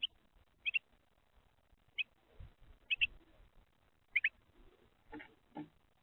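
Carolina wren at the feeder giving short, sharp, high chips, several in quick pairs, spaced about a second apart. Near the end come two duller knocks, like the bird shifting or tapping on the feeder tray.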